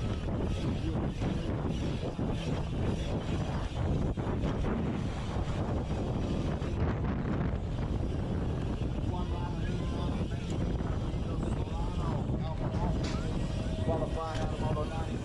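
Wind buffeting the rider's camera microphone as a BMX race bike is ridden at speed, with the tyres rolling over the track underneath. Faint voices cut through over the last few seconds.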